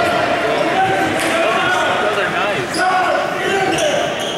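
Basketball game sounds in a gym: a ball bouncing on the hardwood court, with voices carrying through the echoing hall.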